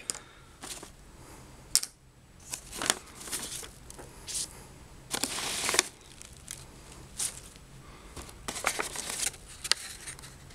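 Crumpled paper packing stuffing rustled and crinkled by hand, in irregular short bursts, the longest about five seconds in.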